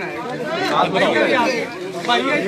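Men talking, several voices at once.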